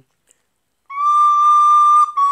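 Recorder (German-fingered flauta doce) coming in about a second in after a moment of silence, holding one steady high note loudly.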